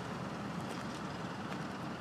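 Freight train of tank cars rolling past, a steady noise of wheels running on the rails with a few faint clicks.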